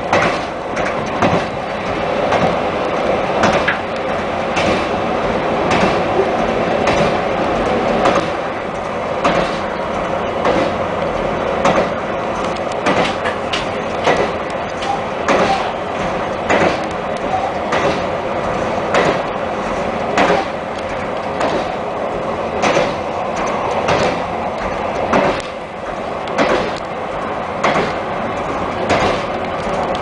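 KiHa 261 series diesel express train running at speed, heard from inside its lead car: a steady running rumble and engine drone, with sharp wheel clicks over the rail joints coming about once or twice a second at uneven intervals.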